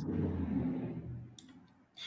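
A couple of brief computer mouse clicks about one and a half and two seconds in, over a faint low hum and hiss that fades out just before the first click.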